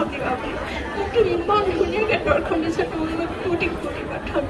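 Speech only: an elderly woman talking into a handheld microphone.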